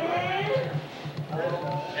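People's voices in a crowded room, with one drawn-out, wavering vocal sound near the start and more voices about halfway through, over a low pulsing hum.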